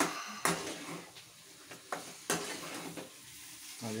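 A metal spoon stirring chicken fry in a steel kadai, with repeated scrapes and clinks against the pan every second or so over the sizzle of the masala frying.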